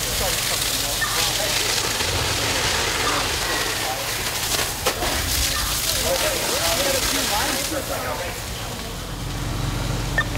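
Fireground noise: a hose stream spraying water onto a burning building, a steady rushing hiss that eases about eight seconds in, over the low, steady drone of running fire engines. Scattered voices can be heard, and a radio voice calls near the end.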